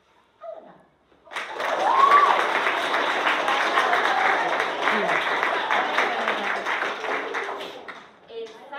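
A room full of schoolchildren and adults clapping and cheering, with a shout rising above the applause about two seconds in. The clapping starts about a second in and dies away near the end.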